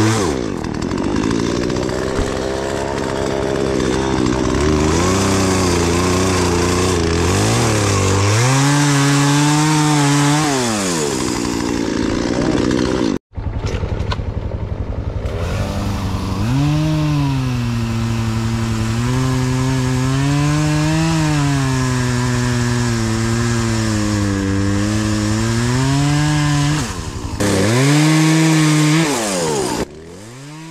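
Two-stroke chainsaw cutting through fallen aspen trunks and branches, its engine pitch rising and sagging again and again as it revs and loads in the cuts. The sound breaks off for an instant about a third of the way through, then carries on.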